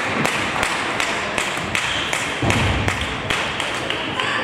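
Table tennis balls clicking on tables and bats, an irregular run of sharp taps from play around the hall, with a heavier low thud about two and a half seconds in.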